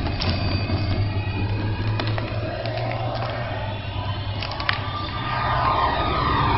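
Horror film soundtrack: a steady low droning rumble with scattered sharp clicks and knocks, swelling louder near the end.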